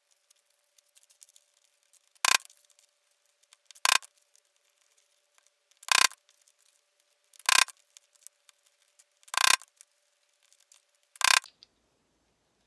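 Hammer striking a grommet setting tool, metal on metal: six sharp blows with a short ring, about one every one and a half to two seconds, each one setting a brass grommet.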